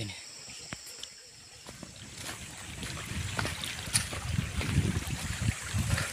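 Quiet forest ambience with a steady high buzz for the first couple of seconds. Then rustling and irregular heavy footsteps on leaf litter build up, with a stream running: someone walking while carrying a heavy load.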